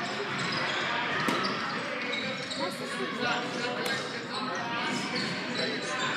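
Echoing ambience of a large indoor training hall: indistinct voices and occasional ball thuds, with one sharp knock about a second in.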